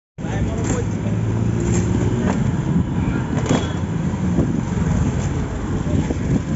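Busy city street traffic heard from a moving cycle rickshaw: a continuous rumble of road traffic, a steady low hum for about the first two seconds, and scattered short knocks and rattles, with voices in the background.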